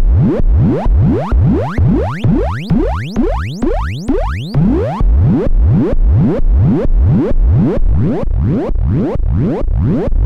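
Serge modular synthesizer tone waveshaped through the Extended ADSR, its pitch gliding upward again and again, about two to three rising sweeps a second, each starting loud and fading. Around the middle the sweeps climb higher and brighter, then settle into shorter, quicker rises.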